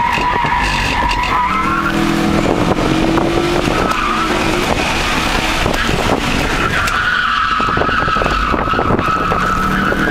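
A 2000 Nissan Maxima's tyres squealing through autocross corners, heard from inside the cabin, over its V6 engine working hard. The squeal comes near the start and again in a long stretch from about seven seconds on; in between, the engine note climbs as the car accelerates.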